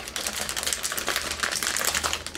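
Plastic anti-static packaging crinkling as it is handled, a dense run of small irregular crackles.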